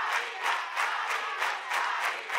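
Studio audience applauding: many hands clapping together with crowd noise.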